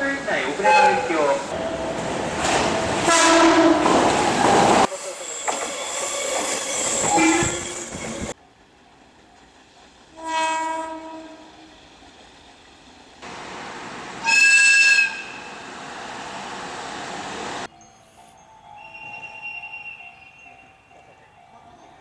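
A string of short horn blasts from Japanese electric freight locomotives, spliced one after another. The first sounds over the rumble of a passing freight train. The loudest and highest-pitched blast comes a little past the middle, and a faint, distant one follows near the end.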